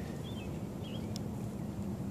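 Steady low background hum with two faint short chirps early on and a single faint click just after the middle.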